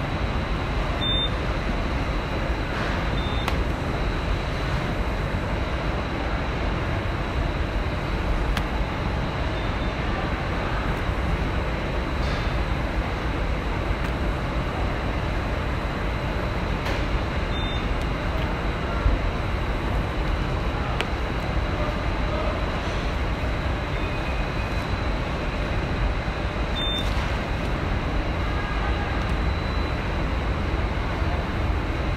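Steady factory ambience: a dense, even machinery rumble, strongest in the low end, with a faint high whine held throughout and a few light clicks.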